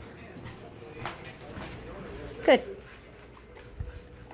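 Dogs moving about on a hardwood floor, with faint scuffs and taps throughout. A woman's voice says "good" once, about halfway through, and this is the loudest sound.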